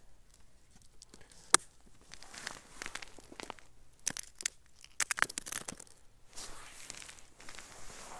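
Crunching and crinkling on snow-crusted ice as a small plastic box and other ice-fishing gear are handled and set down. There is a sharp click about a second and a half in, and a cluster of clicks and crunches around four to five seconds.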